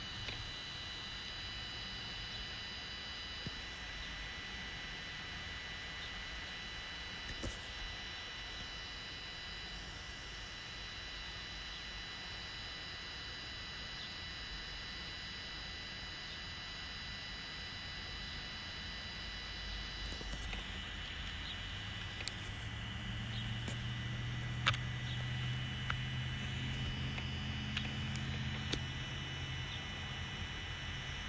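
Steady outdoor background noise with a faint, steady high-pitched whine. From about two-thirds of the way in, a vehicle's low engine hum rises and holds, with a few light clicks.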